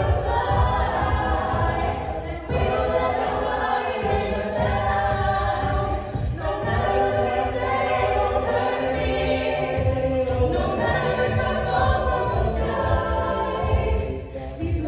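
Mixed-voice a cappella group of men and women singing a pop arrangement in close harmony, with a vocal-percussion beat underneath.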